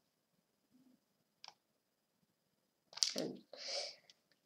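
Computer mouse clicks as an online chess move is played: one faint click about one and a half seconds in, then a louder cluster of clicks and a short rush of noise near the end.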